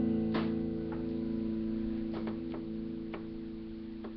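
Acoustic guitar's last chord ringing out and slowly fading away, with a few faint clicks over the decay.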